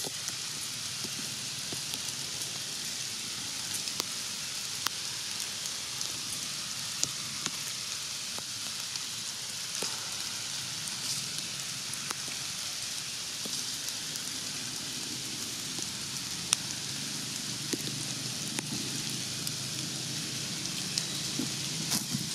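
Steady outdoor hiss with scattered light ticks and taps running through it.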